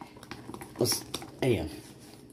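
Light, irregular clicking and scraping of a whisk beating an egg and oat-flour batter in a plastic tub.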